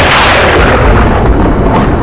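Loud rumbling boom sound effect: a burst of noise that slowly fades in its upper part over a heavy, continuing low rumble.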